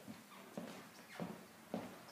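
Footsteps walking across a floor: three distinct steps, a little over half a second apart.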